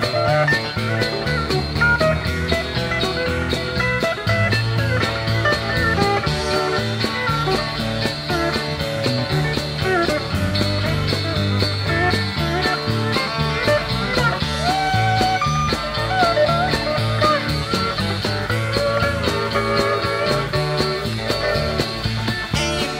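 Soundboard recording of a live country-rock band, with pedal steel guitar, two electric guitars, electric bass and drums, playing an instrumental break: sliding, bending lead lines over a steady drum beat and bass.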